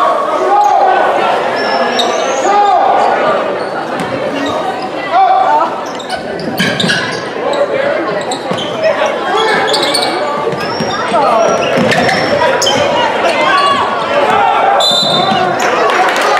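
A basketball dribbled on a hardwood gym floor during live play, over players and spectators shouting and calling, echoing in a large gym.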